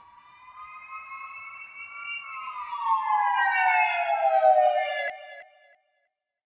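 An emergency vehicle siren wailing: one long tone that swells in and climbs slightly, then slides down in pitch as it gets louder, and cuts off abruptly about five seconds in.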